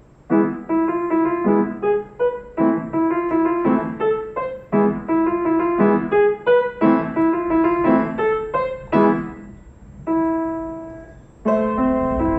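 A child playing a lively beginner piano piece, short chords struck in a quick rhythm from about half a second in. Near the end one note is held and dies away, then the playing starts again just before the end.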